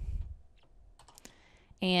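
A few faint, scattered keystrokes on a computer keyboard, after a soft low thump at the start.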